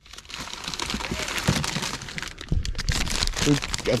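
Plastic bags crinkling and rustling as a hand rummages through a clear plastic storage bin of bagged items, in a continuous stream of crackles.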